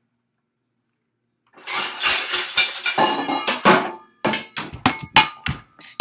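Metal pots and pans clattering and banging, starting about a second and a half in: a quick run of sharp strikes, each leaving a ringing metallic tone.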